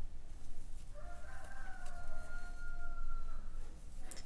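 A single long pitched animal call, starting about a second in, rising slightly at first and then held for about two and a half seconds.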